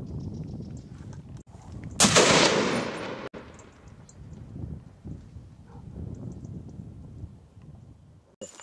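A single scoped hunting-rifle shot fired at wild boar, sharp and loud, about two seconds in. Its echo dies away over about a second. A low rumble of background noise runs under the rest.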